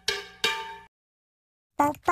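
Two struck, bell-like percussion notes about half a second apart, the second slightly higher, each ringing and fading away, as in a short intro jingle. Silence follows.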